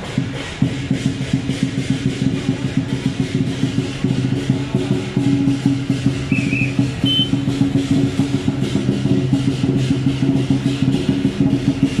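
Lion dance percussion: a large drum beaten in a fast, steady beat with cymbals crashing along.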